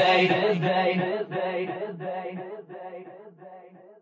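Electronic dance track's outro: the drums have stopped and a pulsing synth chord fades away, growing duller and quieter until it is nearly gone.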